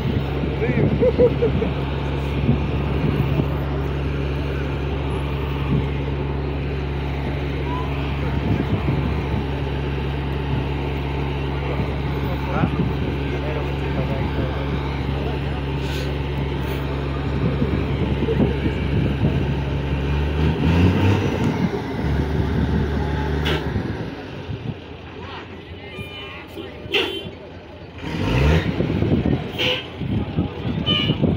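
A truck engine idles steadily. It then revs twice with a rising pitch, once about two-thirds of the way in and again near the end, as the heavily loaded vehicle pulls off. Crowd voices run throughout.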